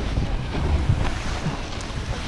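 Wind buffeting an action camera's microphone: a steady low rumble.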